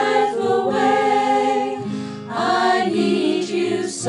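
A choir singing in close harmony, holding long sustained notes in a slow ballad, with a brief dip about two seconds in.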